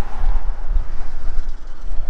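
Wind buffeting the camera's microphone: a loud, gusty low rumble with an even rushing hiss above it.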